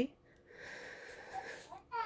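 A woman breathing through tears while crying: one long breath, with a brief rising whimper of voice near the end.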